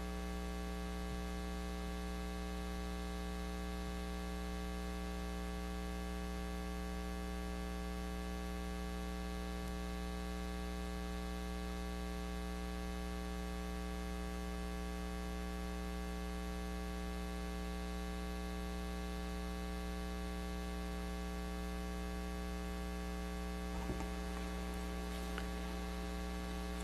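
Steady electrical mains hum in the audio feed: a constant low buzz with a stack of higher tones above it, unchanging throughout. There is a faint brief knock near the end.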